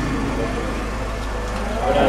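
Indistinct voices of a crowded room of mourners over a steady low hum.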